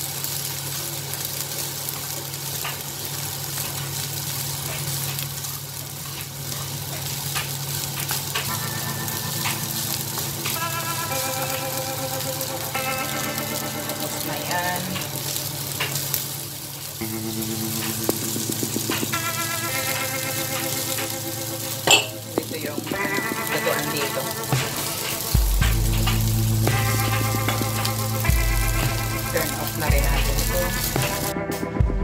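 Leftover rice and meat sizzling in a nonstick frying pan while a wooden spatula stirs and scrapes through it. Background music comes in about eight seconds in and fills out with a bass line near the end.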